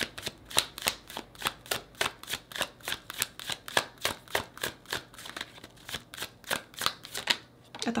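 Tarot deck being hand-shuffled overhand: a quick run of soft card slaps and flicks, about four a second, stopping shortly before the end.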